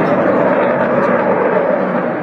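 JF-17 Thunder fighter jet's single Klimov RD-93 turbofan heard during a flying display pass: loud, steady jet engine noise.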